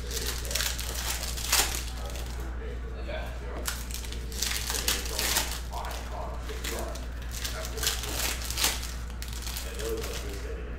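Foil trading-card pack wrappers crinkling and tearing as Panini Prizm football packs are opened and the cards slid out and handled, in short bursts over a steady low hum.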